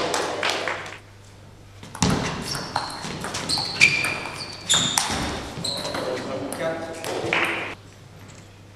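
Table tennis rally in a large hall: the celluloid ball clicks sharply off the bats and table in quick succession, starting about two seconds in and stopping shortly before the end, with short high squeaks from the players' shoes on the court floor.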